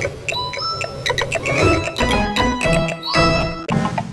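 A bright, chiming children's logo jingle: quick pitched notes like bells and tinkles over a light beat. It breaks off briefly near the end and a new run of the same kind of notes begins.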